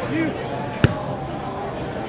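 A beach volleyball hit once by a player, a single sharp slap a little under a second in, amid players' calls and voices.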